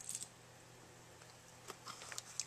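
Near silence, with a few faint clicks and light rustles of hands handling a small fabric pouch and its contents at the start and again near the end.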